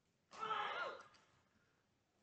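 A short, faint, breathy vocal sound, like a sigh or exhalation, lasting about half a second near the start. Otherwise near silence.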